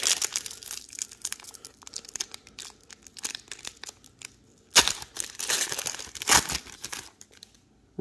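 Trading card pack wrapper crinkling and crackling as it is peeled and torn open, with two louder rips about five and six and a half seconds in.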